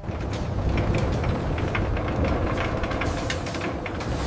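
Factory conveyor machinery running: a steady low rumble with irregular clicking and clattering, and a short burst of hiss about three seconds in.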